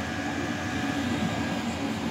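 Chinese diesel air heater running at full output, its blower fan at about 4,900 rpm: a steady drone of fan and burner with a faint thin whine.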